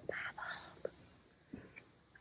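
A woman whispering a few soft words in the first second, then faint room tone.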